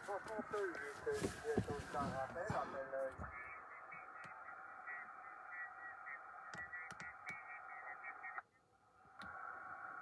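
Yaesu FT-891 HF transceiver receiving 40-metre lower-sideband signals through its speaker: faint, thin, narrow-band voices with steady tones. The audio cuts out abruptly for under a second near the end, then returns. There are a few light clicks of its front-panel buttons.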